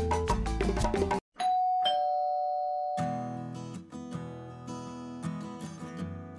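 Background music breaks off about a second in. A two-note doorbell chime rings out, a higher note then a lower one, each ringing on: someone is at the front door. Soft music comes back in about halfway through.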